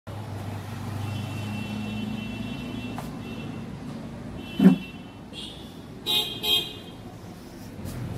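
City street traffic with car horns honking: a held horn tone early on, then two short toots about six seconds in, over a steady low traffic rumble. A single sudden loud thump about halfway through is the loudest sound.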